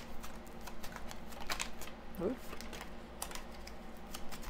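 A deck of tarot cards shuffled overhand in the hands: an irregular string of light clicks as the cards slide and tap against each other.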